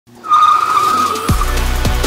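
Tyre-screech sound effect, a steady high squeal, giving way about a second and a half in to electronic music that opens with two deep falling bass hits.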